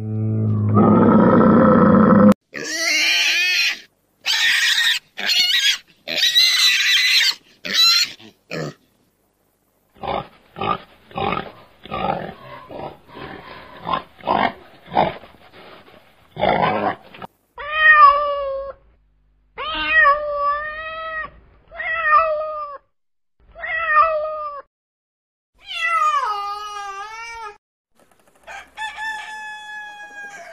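A string of different domestic animal calls, one clip after another. A low rough call comes first, then high-pitched cries and a fast run of short grunts. After that come about five drawn-out calls of about a second each, and near the end a call that falls in pitch.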